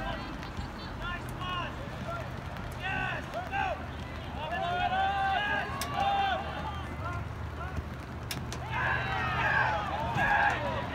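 Spectators and players shouting over one another during a soccer match, the voices swelling louder near the end as the attack nears the goal. A couple of sharp knocks stand out, and a steady low hum runs underneath.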